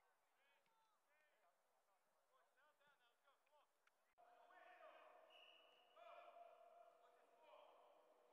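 Near silence with faint, distant voices. About four seconds in the level steps up suddenly, and the faint voices become a little stronger and more drawn out.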